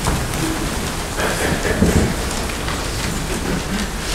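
A steady, even hiss fills the pause, with a faint murmur between about one and two seconds in.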